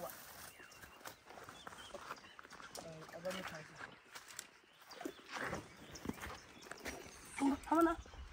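Men talking quietly in short phrases, once about three seconds in and again near the end, with scattered sharp clicks and rustles in between.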